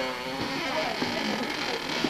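Indistinct voices talking, not made out as words.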